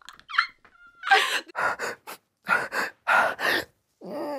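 A woman's brief laugh, then a run of short, breathy excited gasps, about four or five of them.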